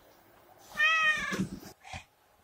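A cat meows once: a single call of under a second that rises slightly in pitch and then falls.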